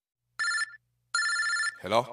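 Telephone ringing twice in quick succession, a double ring after a moment of silence, followed near the end by the start of a voice.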